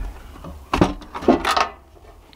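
Metal ammo can being unlatched and its lid swung open: a few sharp metallic clicks and clanks, about a second in and again around a second and a half.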